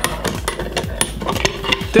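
Clicks and knocks of metal pipe clamps and oak boards being handled during a glue-up, as the clamps are tightened on the panel.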